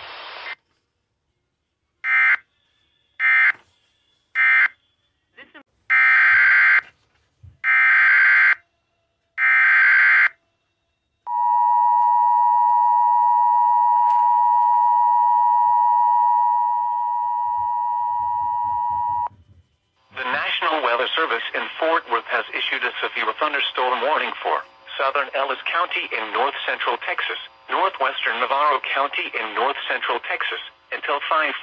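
Emergency Alert System audio over a radio stream. First come three short bursts of SAME digital data, then three longer bursts. Then the two-tone EAS attention signal sounds steadily for about eight seconds before the spoken alert starts.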